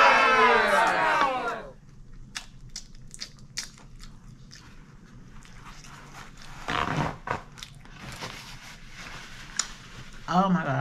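Close-up mouth sounds of chewing and biting fried chicken: a run of sharp crunches and clicks after loud overlapping voices that stop about a second and a half in.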